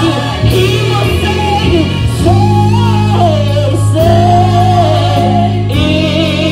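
A group of women singing gospel into microphones, their melody lines rising and falling over held low instrumental notes.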